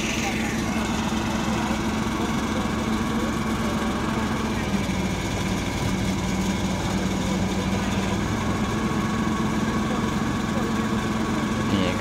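Truck engine idling with a steady, even hum, as the engine of the truck-mounted crane unloading concrete posts.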